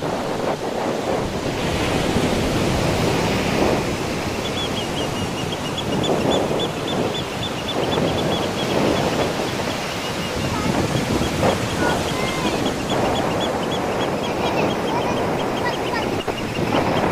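Surf breaking and washing up a beach: a continuous rush of foaming water that swells and eases as each wave runs in and drains back.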